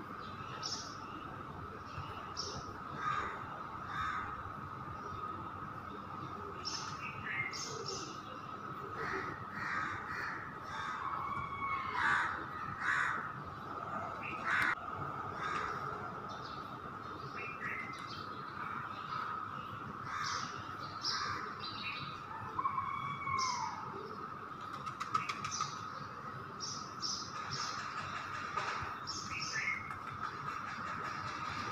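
Crows cawing and small birds chirping in the background, as scattered short calls throughout, over a steady high-pitched hum.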